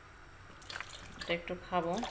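Milk pouring from a carton into a plastic blender jug, a splashing, dripping liquid sound that comes up about half a second in; a woman's voice is heard near the end.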